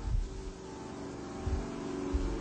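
Steady hum of a drum-shaped rotating magnet motor prototype running on its own after its 110-volt mains plug has been pulled. A couple of dull low thumps come near the start and about a second and a half in.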